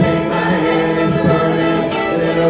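Folk ensemble playing live: several voices singing together in held notes over acoustic guitar and banjo.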